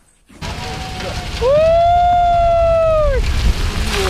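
A long, loud, high-pitched "woooo!" shout held for about two seconds, over a steady low rumbling, rushing noise that starts just under half a second in: earth and rock sliding down a quarry slope.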